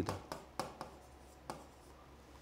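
Stylus tapping and scratching on a touchscreen display while handwriting a short note: about four faint, sharp clicks spread through two seconds.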